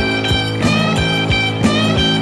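Late-1960s British blues-rock from a vinyl record: electric guitar playing bent notes over a held low chord, with drum hits about three times a second.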